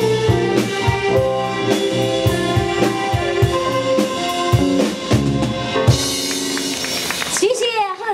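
Live band with drum kit, guitars and keyboard playing the song's instrumental close, with steady sharp drum hits. About six seconds in the drumming stops and a cymbal rings on, and near the end a woman starts talking.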